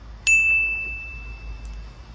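A single bright bell-like ding, an edited-in sound effect, struck once about a quarter second in and ringing out slowly as one clear high tone.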